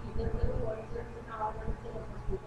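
Faint, indistinct speech, too quiet for the words to be made out.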